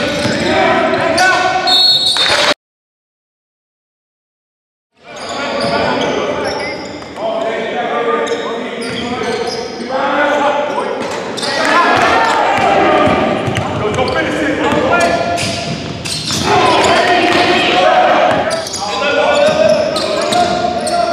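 Live basketball game sounds in a large gym: indistinct voices of players, coaches and spectators echoing, with a ball bouncing on the hardwood. About two seconds in, the sound drops to dead silence for roughly two and a half seconds, then the game noise returns.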